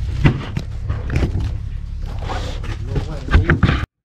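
Plastic bags rustling with clicks and knocks as bagged silicone hoses are handled in a cardboard box, over a steady low hum. The sound cuts off abruptly just before the end.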